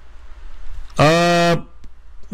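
A man's voice holding a flat, drawn-out 'uhh' for about half a second, about a second in, with quiet pauses either side.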